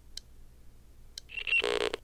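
Faint ticks about a second apart over a low hum, then near the end a brief, loud ring like a telephone's, cutting off suddenly.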